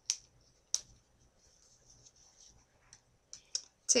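Hair rollers being pulled out of braided hair by hand: sharp clicks, one right at the start and another under a second in, then a quick run of three near the end, over a faint rustle of hair.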